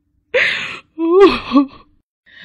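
An elderly woman's voice, acted, crying in distress: a sharp breathy gasp, then a short wailing sob that rises and falls in pitch.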